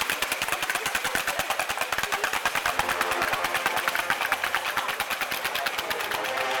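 A fast, unbroken run of sharp cracks, about ten a second, from a string of firecrackers going off.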